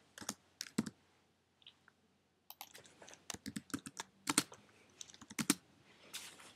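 Typing on a computer keyboard: a few separate keystrokes at first, then a quicker run of key clicks from about two and a half seconds in until near the end.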